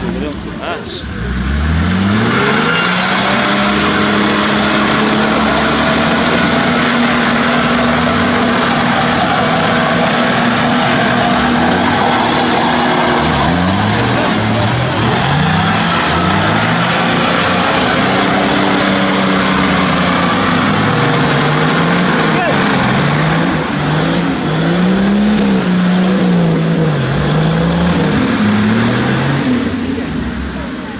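Toyota Land Cruiser engine revved hard while the vehicle is bogged in deep mud. The revs climb about a second in and hold high for roughly ten seconds, then rise and fall over and over through the second half.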